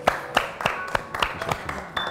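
Hands clapping in applause after a recited poem: a string of sharp claps, about three or four a second.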